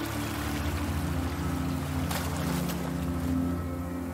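Ambient meditation music of steady sustained tones, layered with a rushing, water-like hiss that comes in at the start and swells briefly a little past two seconds in.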